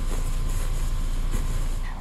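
KTM 1190 motorcycle rolling slowly: a steady low rumble of engine and road noise with a wash of wind hiss, which cuts off suddenly at the end.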